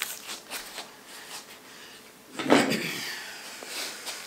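Quiet handling and rummaging sounds, with one louder slide or knock about two and a half seconds in, in keeping with a drawer being opened to fetch scissors for cutting open the jelly roll's plastic wrap.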